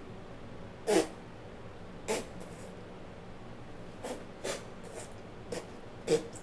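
A man's short throaty "mm" about a second in, followed by five more brief grunts and breathy nasal sounds, each dropping in pitch, as he reacts to a drink he has just swallowed.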